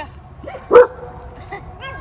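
A Doberman–pit bull mix gives a single short, loud bark about three-quarters of a second in.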